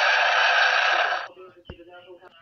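A harsh, steady monster cry for a toy kangaroo monster stops suddenly a little over a second in. A faint click follows.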